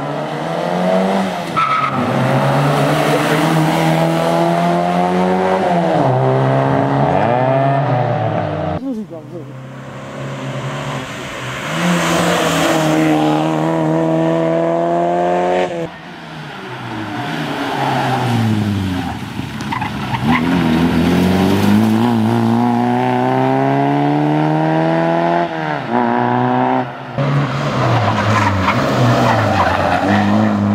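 Škoda Favorit rally car's 1.3-litre four-cylinder engine revving hard through the gears, near-stock, heard over several separate passes. The pitch climbs in each gear, then drops at each shift or on lifting for a corner.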